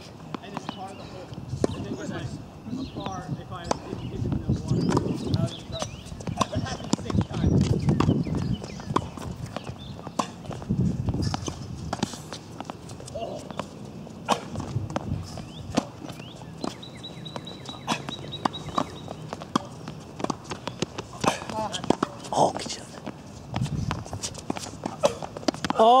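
Tennis rally on a hard court: racquets striking the ball back and forth, with repeated sharp pops and players' footsteps.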